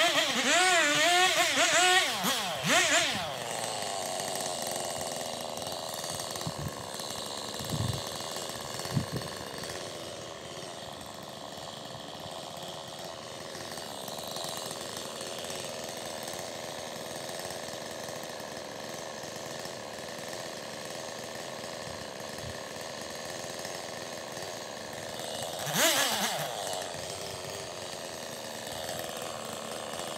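Husqvarna 390 XP two-stroke chainsaw revving with a wavering pitch, then settling into a steady lower note as it bucks through a log for about twenty seconds. It revs up briefly again about 26 seconds in and once more at the very end.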